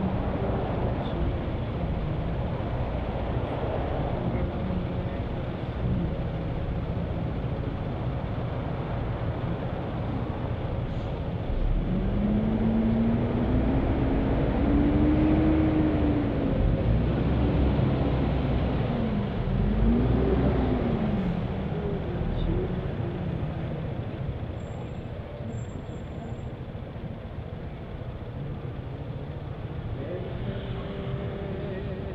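Road traffic heard while stopped in a city lane: a steady rumble of engines, with one vehicle's engine note rising and falling in pitch twice around the middle, where it is loudest.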